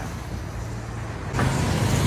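Road traffic passing by: a steady vehicle rumble that swells louder about a second and a half in as a heavier vehicle goes past.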